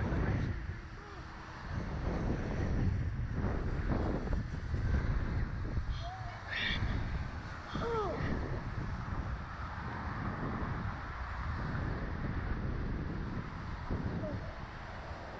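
Wind buffeting the microphone of a camera mounted on a Slingshot reverse-bungee ride capsule as it hangs and sways, a low rumble that swells and dips. A few short high squeaks or calls cut through it about six to eight seconds in.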